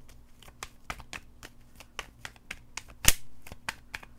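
A tarot card deck being shuffled by hand: a quick, even run of soft card clicks, about six a second, with one sharper, louder snap of the cards about three seconds in.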